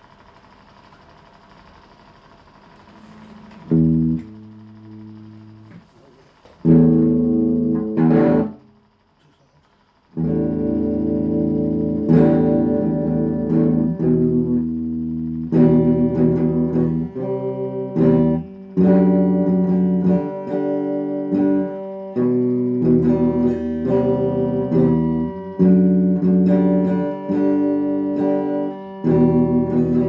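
Electric guitar playing chords: a faint hum at first, a couple of chords about four and seven seconds in, a short pause, then steady chord playing with regular changes from about ten seconds on.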